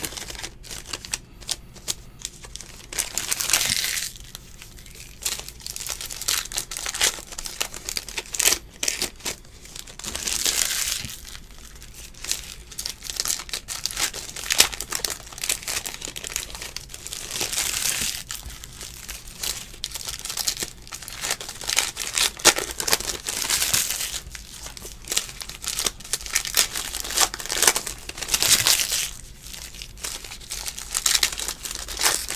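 Foil wrappers of Panini football trading-card packs crinkling and tearing as they are ripped open by hand, a constant crackle with a longer burst every few seconds.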